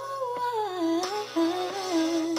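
A boy's high voice singing a drawn-out melody with no clear words. The pitch slides down over the first second, breaks off briefly, then comes back as a lower held phrase.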